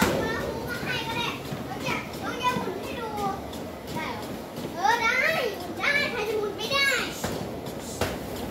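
Children's high-pitched voices calling and chattering as they play, loudest and busiest from about five to seven seconds in.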